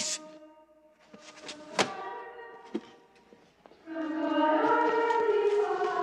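A held note dies away, two sharp knocks follow, and about four seconds in a group of children starts singing together in chorus.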